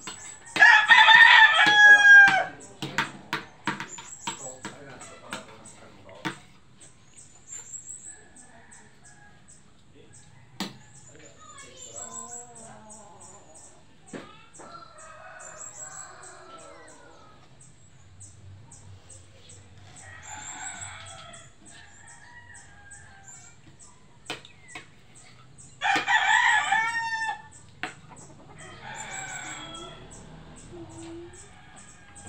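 A rooster crowing twice, once just after the start and again near the end. Each crow lasts about two seconds and ends on a falling note.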